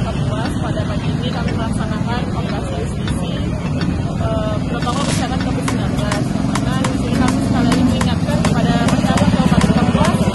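Voices talking at a roadside over the steady low rumble of motor vehicle engines, with scattered short clicks.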